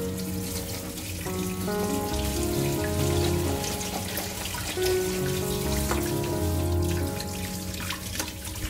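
Kitchen tap running onto vegetables in a stainless steel colander in a metal sink, a steady splashing hiss. Slow background music with long held notes plays over it.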